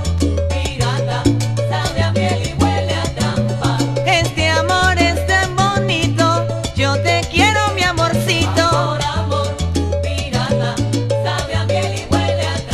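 Salsa band recording: a steady, repeating bass line under dense percussion, with melodic lines bending over the top.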